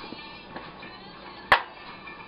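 A single sharp knock, as of a hard object knocked or set down in the kitchen, about one and a half seconds in, over faint background music.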